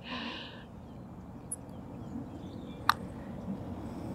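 A golf putter striking the ball: one sharp click about three seconds in, over a quiet outdoor background.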